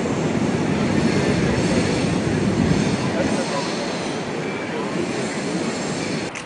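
Loud, steady rumble of city street noise, like passing traffic, with faint voices under it.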